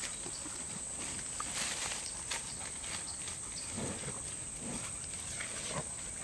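A cow grazing close up, tearing grass off in short irregular rips about once a second as it crops and chews.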